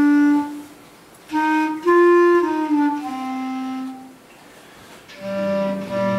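Men's voices singing a slow melody in unison, long held notes in phrases broken by short pauses for breath.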